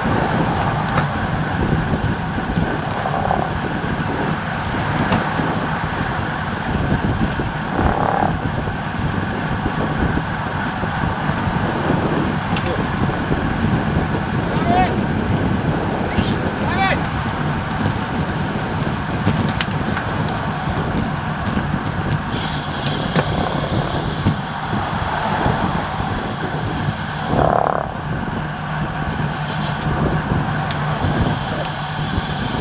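Steady rush of wind over a bike-mounted action camera's microphone, with tyre and road noise, from a road bike riding at about 24 mph.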